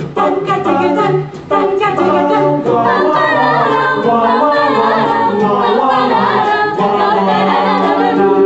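Mixed-voice a cappella group singing close harmony without instruments. It starts with short, clipped chords, then from about three seconds in it holds full, sustained chords.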